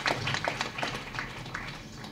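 Audience clapping, a dense patter of claps that thins out and dies away near the end.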